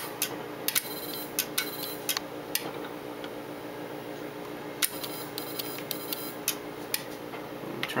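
Irregular clicking as Morse code (CW) is keyed through a transceiver and linear amplifier, the clicks coming in short groups, over a steady low hum.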